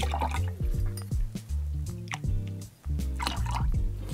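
Pineapple juice poured from a carton into a jigger and tipped into a glass, heard twice, near the start and about three seconds in, over background music.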